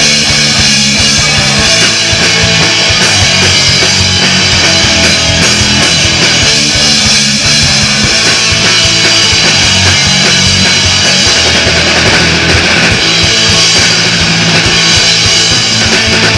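A punk rock band playing live, loud and without a break: electric guitars over a drum kit.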